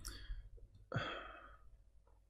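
A man's sigh: one breathy exhale about a second in that fades away over most of a second.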